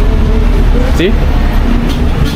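A short spoken reply in Spanish, "Sí. ¿Sí?", over a steady low rumble.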